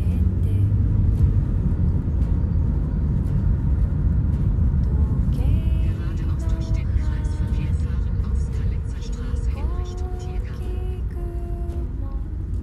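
Steady low rumble of a road vehicle in motion, heard from inside it. From about halfway in, a voice with drawn-out pitched tones joins.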